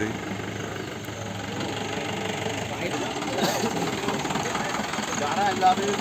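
A jeep engine running at low revs under faint background voices.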